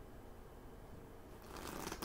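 Quiet room tone, then about one and a half seconds in a short papery rustle as oracle cards are handled and set down.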